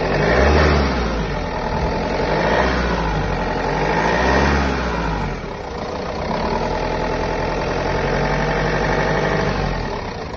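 Renault Master van's engine, heard with the bonnet open, revved up and back down three times in quick succession, then settling to a steady idle for the second half.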